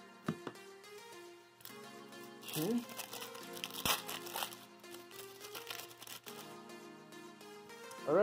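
Wrapper of a 1990 Score football card pack torn and crinkled open in a couple of quick rustling bursts about halfway through, over quiet background music.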